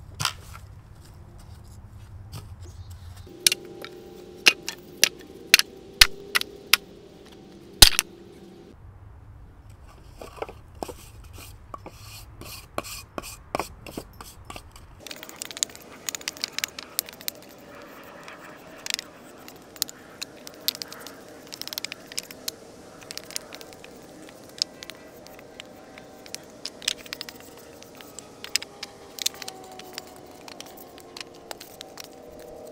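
Weathered scrap wood boards knocking and clattering against each other as they are picked up and laid down on a pile, a scatter of sharp wooden knocks, the loudest about eight seconds in.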